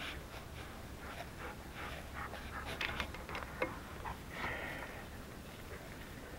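Faint clicking and rustling of hands fitting rods and pins onto a Kubota backhoe's control-valve lever linkage, with a few sharper metal clicks around the middle. A man's breathing is heard close by.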